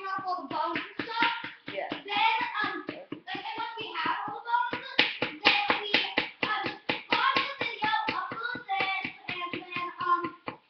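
Small hammer tapping rapidly at the plaster block of a dinosaur excavation kit, several sharp taps a second, chipping the plaster away to free the fossil pieces. A voice sings or hums over the tapping.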